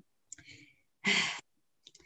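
A woman sighs: a faint breath in, then one audible breath out about a second in, with a small click just before.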